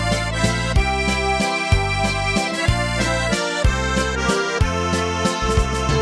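Instrumental break of an eastern Slovak folk song: accordion playing the melody over a programmed bass and drum accompaniment with a steady beat.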